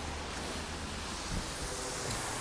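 Steady outdoor street background: an even hiss with a low rumble of wind on the microphone.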